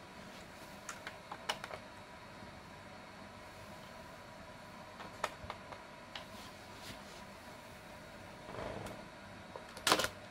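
Scattered light plastic clicks and taps as a hand handles a Lego Batmobile model. There is a soft brushing rush shortly before the end, then a sharper click as the hand works a part at the rear, over a faint steady hum.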